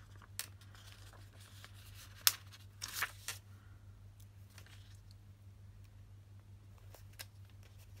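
Crinkling of a thin plastic sticker sheet as small washi dot stickers are peeled off it and pressed onto a paper page: a sharp click a little over two seconds in and a short rustle near three seconds, then only a few light ticks. A steady low hum runs underneath.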